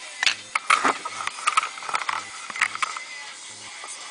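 Handling noise: a quick run of irregular clicks and rustles from a camera and a thin plastic deli cup being moved about. Under it runs a faint low hum that pulses about once a second.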